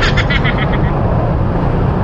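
Honda Click 125i scooter's single-cylinder engine running at low speed in stop-and-go traffic, under a steady rush of road and wind noise. A short run of rapid high clicks sounds at the very start.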